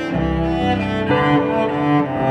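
Two cellos playing a slow, sad instrumental piece, bowed notes held and changing about every half second.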